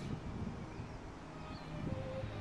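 Wind on the camera microphone, a steady low rumble.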